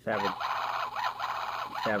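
Electronic sound effects from the speaker of a 1999 Star Wars Darth Maul probe droid toy: a run of quick chirps rising and falling in pitch, with a man's voice coming in near the end.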